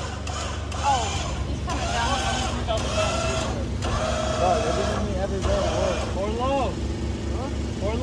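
Vehicle engine running steadily at idle under indistinct voices talking.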